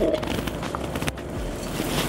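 Salmon fillets frying skin-down in hot oil in a cast iron pan: a steady sizzle.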